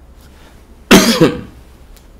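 A man coughs once, a loud, short, harsh cough about a second in.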